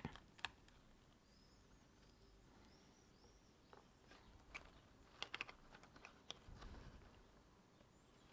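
Near silence with a few faint, light clicks and taps, a small cluster of them in the second half, from the plastic housing of a small PC water-cooling pump being handled and prised apart.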